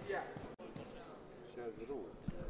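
Faint, off-microphone voices of members speaking in a parliamentary chamber during a pause in the amplified debate.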